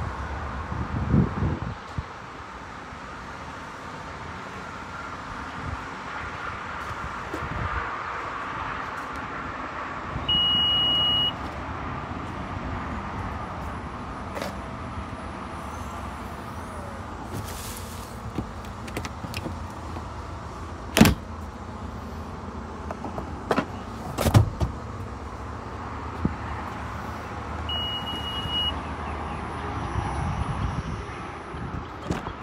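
Power tailgate of a 2021 Honda Passport: a steady one-second warning beep about ten seconds in and another near the end, with the electric whir of the liftgate motor between them. A few sharp knocks come in the second half.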